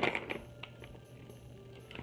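Soft plastic packet of micellar cleansing wipes being handled, with a few faint light clicks and rustles over a low steady hum.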